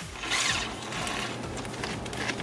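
Hands moving rubber coolant hoses and plastic fittings in an engine bay: a soft scraping rustle with faint clicks, strongest in the first second.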